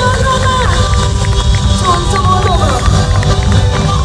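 Live pop band playing loudly through a PA with a steady, bass-heavy beat, and a woman singing a line with gliding, bending pitch over it.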